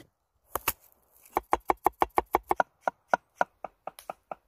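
A chef's knife chopping on a wooden cutting board. Two strokes come near the start, then a fast run of chops about a second in, slowing to a steadier, slower beat in the second half.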